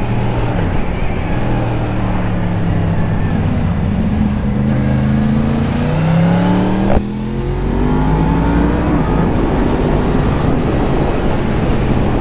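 Motorcycle engine under way with wind rushing over the bike, the revs climbing and easing through the bends, with a sudden change about seven seconds in as the rider shifts gear.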